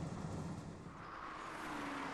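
A car driving along the road: steady engine and road noise with no sudden events.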